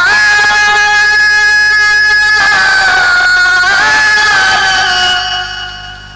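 A man singing a naat without instruments, holding one long, high sung note. The note shifts pitch twice and fades away near the end.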